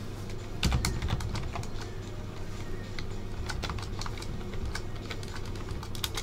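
Typing on a computer keyboard: a run of irregular keystroke clicks as numbers are entered one per line.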